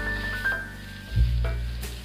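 Leftover garlic rice sizzling in a stainless steel wok while a wooden spatula stirs it. Background music with a melody and a heavy bass plays over it.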